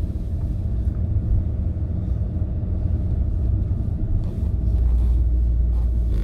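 Steady low rumble of a car's engine and tyres on a wet road, heard from inside the cabin while driving slowly, a little louder about five seconds in.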